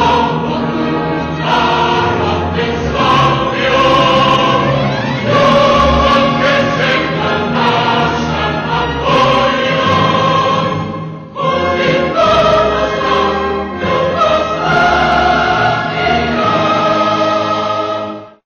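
Closing-credits music: a choir singing long held notes over instrumental accompaniment, with a brief drop about two-thirds of the way through.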